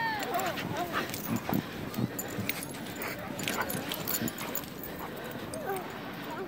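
Dogs playing in snow and yipping and whining, with one falling whine at the start and another near the end, over the short crunches and patter of their running.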